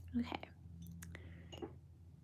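A woman's short, breathy murmur just after the start, followed by a few faint clicks.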